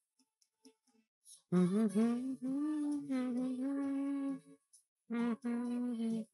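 A man humming a melody along with an anime ending theme, in long held notes. It starts about a second and a half in, breaks off briefly a little before the five-second mark, then resumes.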